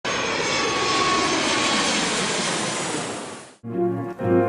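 Jet aircraft engine noise, loud and steady, fading out over the last half-second or so. Piano music starts just before the end.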